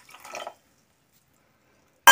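Water pouring briefly and faintly onto sugar in a stainless-steel pot, stopping about half a second in, followed by near silence.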